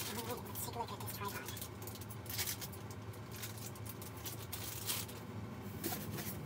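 Plastic packaging bag rustling and crinkling in short spells as a small tripod is handled and unwrapped, with light handling noise against foam packing.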